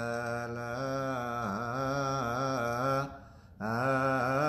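A man's voice chanting an Ethiopian Orthodox prayer on a low, held note that bends slightly in places. It breaks off for half a second about three seconds in, then resumes on the same pitch.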